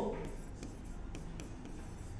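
Faint scratching of writing, a few light irregular strokes as an arithmetic step is written out.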